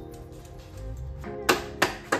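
Background music, with two sharp mallet knocks on metal engine parts about a third of a second apart near the end.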